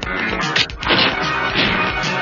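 Several sharp whacks of dubbed film-fight punch sound effects over the background score.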